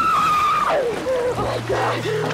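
A woman screaming in terror: one long, high, held scream breaks and falls away about two-thirds of a second in, then gives way to shorter wavering cries. Water is splashing around her, and a low held tone from the film score comes in about halfway through.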